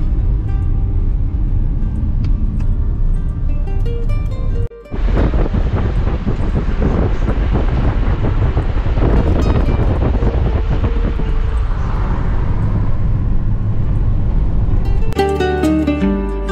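Road and engine noise heard inside a Renault Captur's cabin while driving: a steady rumble that dips briefly about five seconds in. About a second before the end it gives way to acoustic guitar music.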